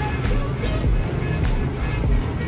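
Background music: a song with a steady beat.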